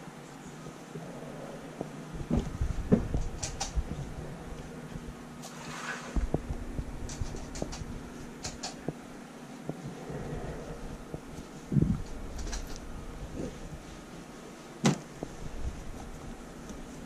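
Fleece liners and bedding being handled and spread over a wire-grid guinea pig cage: soft rustling of fabric with scattered clicks and a few louder knocks against the cage, the loudest about three seconds in, then near twelve and fifteen seconds.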